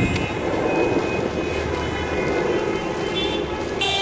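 Steady rumble of heavy, slow-moving traffic: many cars' engines and tyres in a jammed car park.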